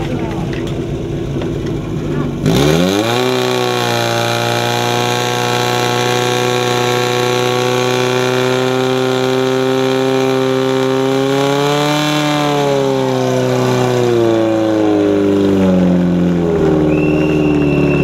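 Portable fire pump's small petrol engine idling, then revved up hard about two and a half seconds in and held at a steady high whine while it pumps water out through the attack hoses. From about two-thirds of the way through, the revs waver and dip several times. A thin high tone comes in near the end.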